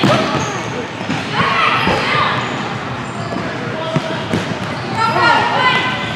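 Futsal ball being kicked and bouncing on a hardwood gym court, a few sharp knocks, among shouting voices from players and spectators in a large gym hall.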